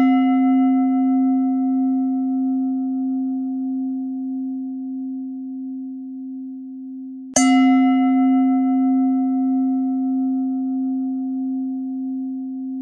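Singing bowl ringing after a strike, then struck again about seven and a half seconds in. Each strike rings on as a low, steady hum with a slow waver and fades gradually.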